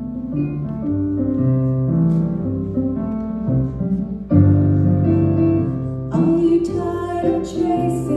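Piano-led instrumental introduction to a song, sustained chords changing about once a second, growing louder about four seconds in and fuller and brighter from about six seconds in, ahead of the vocal entry.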